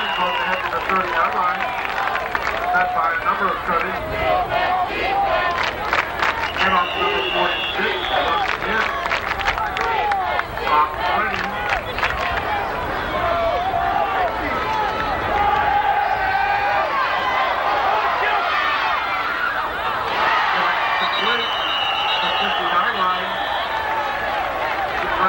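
Football crowd in the stands: many voices talking and calling out, with a stretch of clapping and cheering from about five to twelve seconds in.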